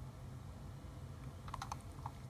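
Quiet pause with a low steady hum, and a few faint, quick clicks about one and a half seconds in.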